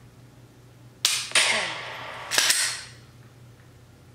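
Simulated gunshot sounds from a laser dry-fire training app, each marking a registered laser shot: two sharp reports about a third of a second apart a second in, then a third about a second later, each dying away quickly.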